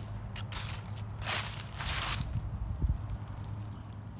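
Footsteps crunching on dry fallen leaves: two steps a little over a second in, then quieter shuffling, over a low steady background rumble.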